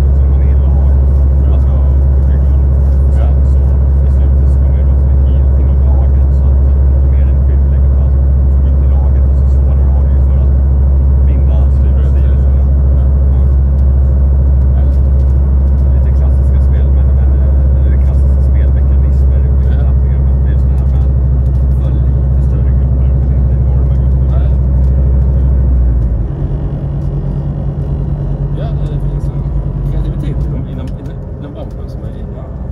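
Bus engine and running noise heard from inside the cabin while driving, a loud steady low drone. About 26 seconds in the deep hum drops away and the engine note changes to a lighter, rougher sound.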